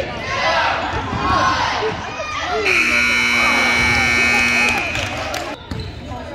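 Gymnasium scoreboard buzzer sounding once, a steady tone held for about two seconds midway through, over spectators' voices and a basketball bouncing on the hardwood.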